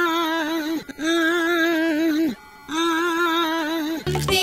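A single held note with a steady vibrato, sounded three times at the same pitch. Each note lasts a second or more, with brief breaks about a second in and again past the halfway point.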